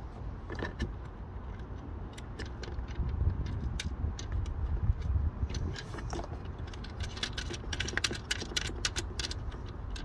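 Small metal washers and nuts clinking and ticking as they are handled and spun onto the mounting bolts by hand. The clicks come irregularly, many of them, over a low rumble.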